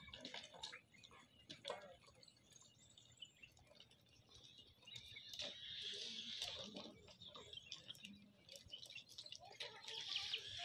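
Faint ambience from a herd of blackbuck at feeding troughs: scattered light clicks and taps, with birds chirping faintly in the background, a little louder past the middle.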